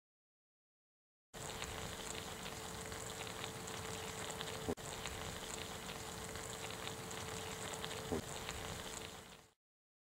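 Italian sausages, peppers and onions sizzling and simmering in their cooking water in a USGI mess kit pan over a wood-burning camp stove. It starts about a second in, with a sharp click about halfway and another short click near the end, then fades out shortly before the end. A faint steady tone runs underneath.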